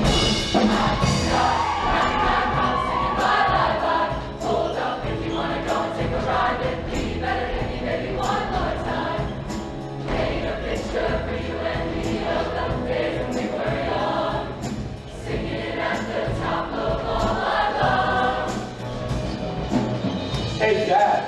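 A mixed-voice show choir singing together over instrumental accompaniment with a steady drum beat.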